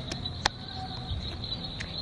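Steady, high-pitched insect trilling, typical of crickets in a tropical garden at dusk, with one sharp click about half a second in.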